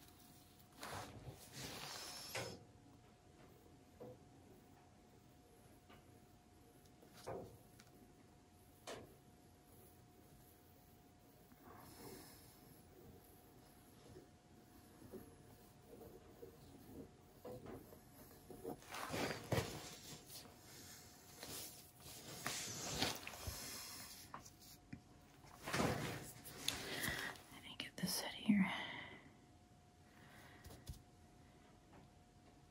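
Soft whispering and breathy voice sounds in short spells, over a faint steady hum.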